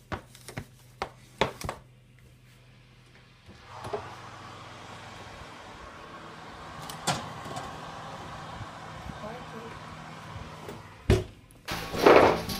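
A cake tin being put into an oven. A few light clicks and knocks of handling, then a steady hum from the open oven for several seconds, a knock of the tin on the oven rack, and a heavier thump near the end as the oven door is shut.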